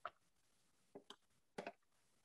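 Near silence with a few faint, short clicks and knocks from handles being fitted onto the rear of a Lagree Micro fitness machine.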